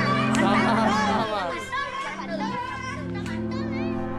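Children shouting and chattering excitedly in Indonesian over background music with sustained chords.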